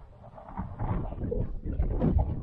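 Wind buffeting the camera microphone on an open cricket field: a low, irregular rumble that swells toward the end.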